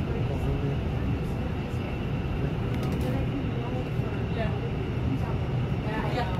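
Airliner cabin noise while taxiing after landing: a steady low rumble of the engines and airframe.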